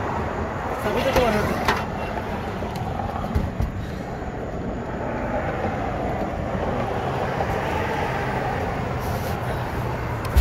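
Steady car engine and road noise, with faint talk about a second in.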